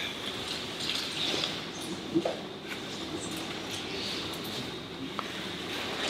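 Rustling of jiu-jitsu gis and bodies shifting on the mat as two grapplers struggle through a rear choke attempt, with scattered small knocks and one sharper bump about two seconds in.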